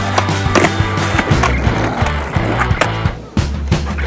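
A skateboard on asphalt during flatground freestyle tricks: wheels rolling and several sharp clacks as the board is flipped and lands, over background music with a steady beat.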